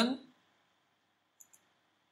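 A single mouse click, heard as two quick faint ticks (press and release) about one and a half seconds in, against near silence.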